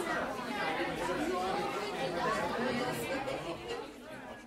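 Many voices chattering over one another in a steady babble, with no single clear speaker.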